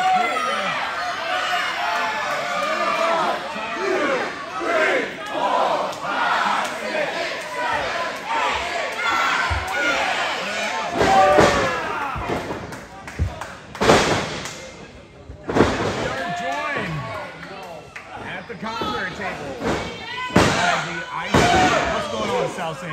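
Wrestling crowd shouting and yelling in a large hall, with a few sharp slams of bodies hitting the ring canvas in the second half.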